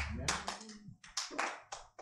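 A small congregation clapping: a scattering of irregular hand claps that thin out and fade over the two seconds.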